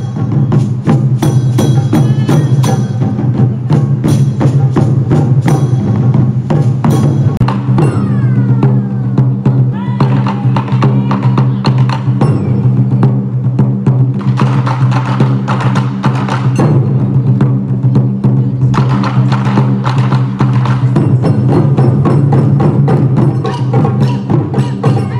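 Taiko drum ensemble playing: several drummers strike large barrel drums with sticks in a dense, steady rhythm of deep hits.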